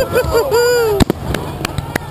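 Aerial firework shells bursting overhead: sharp bangs over a crackling haze, the loudest bang about a second in and a few more near the end.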